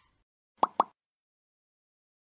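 Two quick cartoon-style pop sound effects, about a fifth of a second apart, from an animated logo intro.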